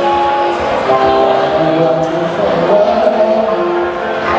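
Solo live performance of a slow ballad on electric guitar, an Epiphone Sheraton II, with a melody line in long held notes over the guitar chords.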